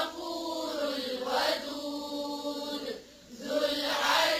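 Qur'an recitation chanted in tajweed style: a voice holding long, drawn-out melodic notes, with a short break for breath about three seconds in.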